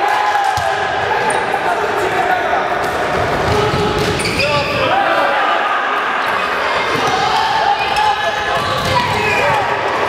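A handball bouncing on a sports hall floor during play, with short knocks scattered throughout, over players' shouts and calls that echo in the hall.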